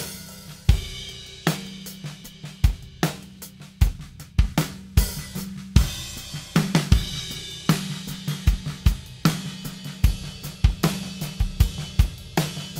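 Raw, unprocessed multitrack recording of an acoustic drum kit playing a steady groove: regular kick and snare hits under continuous hi-hat and cymbals.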